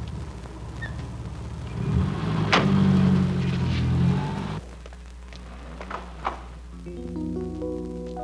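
A Mercedes-Benz station wagon's engine running, with a sharp thunk like a car door shutting about two and a half seconds in. The sound cuts off suddenly partway through, then a few light clicks, and a soft music score with held notes comes in near the end.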